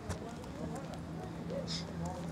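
Indistinct background voices of people talking at a distance, with scattered faint clicks and a brief high-pitched chirp near the end.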